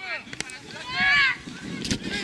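Young children's voices calling and shouting across a football pitch, with one loud, high shout about a second in. A sharp thump comes just before the end.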